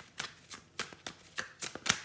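Tarot cards being handled: a quick string of short, sharp card clicks and slaps as cards are drawn and laid down, the loudest near the end.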